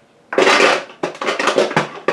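Plastic and glass makeup tubes clattering and clinking as a hand rummages through a stash of lip glosses, in two spells of rattling.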